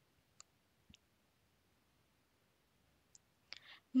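A few faint computer mouse clicks, one of them a quick double click, in near quiet.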